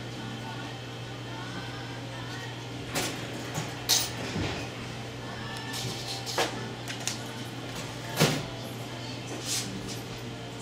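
Steady low hum of a shop interior, broken by a handful of sharp knocks and clacks, the loudest about four seconds in and again about eight seconds in.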